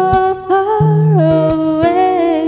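A woman singing a wordless, hummed vocal line over acoustic guitar accompaniment. Her voice holds notes and steps down in pitch about a second in, while the guitar sounds low bass notes and a few plucked strokes.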